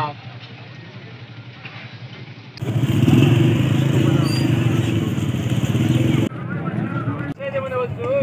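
Low background noise of an open-air market, then a loud, steady engine running close by that starts suddenly about two and a half seconds in and cuts off about six seconds in. A voice begins near the end.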